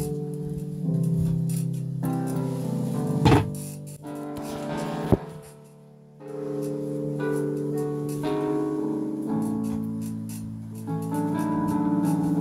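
Nord Electro 2 stage keyboard playing sustained chords, with a pause of about a second midway before the chords start again. Two sharp knocks stand out, about three and five seconds in.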